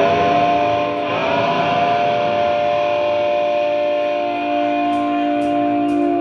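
Electric guitar through an effects unit with distortion, holding a chord that rings steadily, with a fresh pick attack about a second in. A few faint high ticks come near the end.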